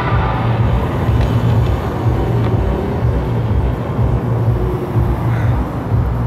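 Live music through a large outdoor festival PA, heard from outside the arena at a distance: a heavy, pulsing bass beat dominates, with the upper parts blurred. A held chord dies away just after the start.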